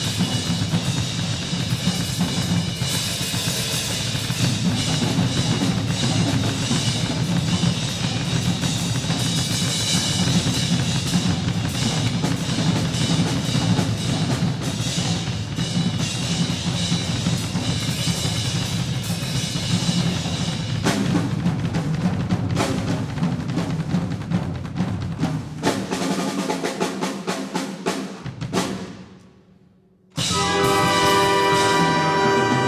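Drum solo on a Pearl drum kit: fast, busy playing across bass drum, snare, toms and cymbals. The hits thin out near the end and die away to a short silence.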